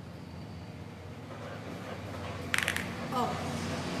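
Small scissors snipping sewing thread: a quick cluster of crisp clicks about two and a half seconds in, over a low steady hum.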